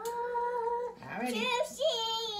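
A young child's voice, held on one long high note for about a second, then wavering and sliding up and down: a drawn-out cry of disgust at the slimy raw egg.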